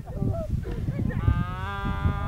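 Threshing cattle lowing: one long, level moo that begins a little over a second in and is still held at the end.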